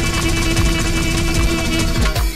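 Live party band playing fast dance music, with a steady driving drum beat and a long held note underneath.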